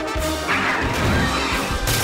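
Cartoon crash of a wooden door being smashed through, a splintering burst about half a second in with another hit near the end, over orchestral music.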